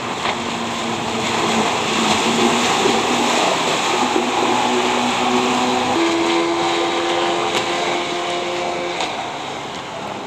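A 33 kW outboard motor running at planing speed under a steady rush of wind and water; its tone steps higher about six seconds in.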